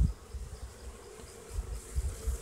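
Honey bees buzzing around an opened hive box as the colony is worked: a faint, steady hum, with low rumbling underneath.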